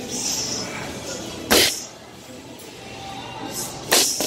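Gloved punches landing on a heavy bag: two loud thuds about two and a half seconds apart, with short hisses near the start and around the second hit.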